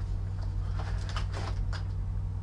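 Faint rustles and small clicks of something being handled and unclipped, over a steady low electrical hum.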